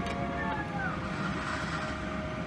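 Steady cabin hum of an airliner, with a few held tones over a low rumble.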